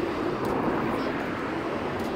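Steady rumble of vehicle traffic, a car driving along the street.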